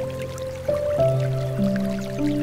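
Slow, gentle piano music, single sustained notes entering about every half second to a second, over faint trickling and dripping water.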